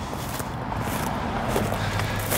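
Steady road traffic noise with a low engine hum coming in near the end, and footsteps on dry cut brush and dirt.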